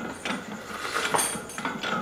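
Light metallic clinks and rattles from a loaded barbell and its plates as the lifter grips the bar and pulls against it to take up the slack before the lift, with a sharper clink about a second in.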